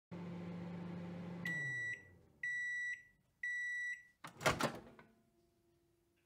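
Microwave oven finishing its cycle: the steady hum of it running winds down about a second and a half in, then it gives three high beeps about a second apart, each about half a second long, followed by a brief double clatter of sharp clacks.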